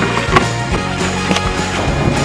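Sharp knocks of a skimboard against a wooden box over background music: the loudest about a third of a second in, two more in the second half.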